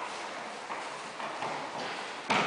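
Bare feet stepping and bodies landing on foam mats during aikido throws and falls: a few soft, irregular knocks.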